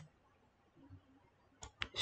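Two short, sharp computer-mouse clicks near the end, otherwise near silence.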